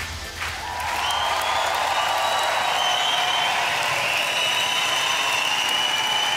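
Studio audience applauding after the song ends, the clapping swelling in about half a second in, with a steady high tone held over it.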